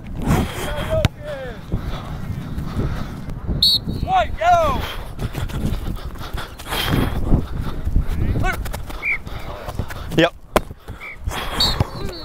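Rustling, wind and movement noise on a body-worn microphone as a footballer runs through a training drill, with short shouted calls from other players a few times.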